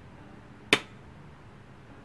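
A single sharp click, loud and brief, about three-quarters of a second in, against a quiet room.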